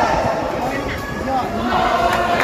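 Indistinct talk from players and spectators in an indoor badminton hall, steady throughout.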